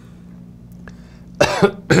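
A man coughs once, near the end, after a short pause that holds only a faint steady low hum.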